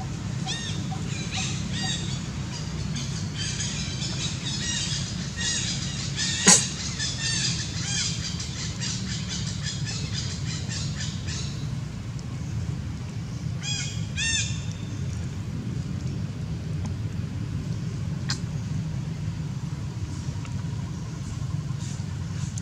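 Birds calling in fast runs of short repeated chirps for the first half, with another short burst around the middle, over a steady low hum. One sharp snap about six and a half seconds in is the loudest sound.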